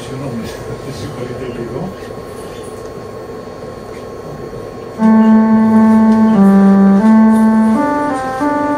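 An electronic instrument built to play Byzantine-music scales sounds a short melody of sustained notes starting about five seconds in. Each note is held for half a second to a second and a half before stepping to the next. The opening seconds are quieter.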